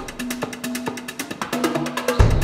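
Background music with a fast, steady beat of light percussion ticks, about eight a second, over a held note; there is no deep bass in this stretch.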